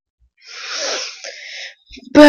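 A person's voiceless, breathy rush of air, starting about half a second in, swelling and fading over about a second.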